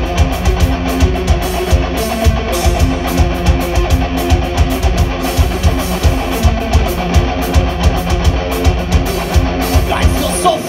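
Heavy metal band playing live: distorted electric guitars over a steady, driving drum beat, with no vocals.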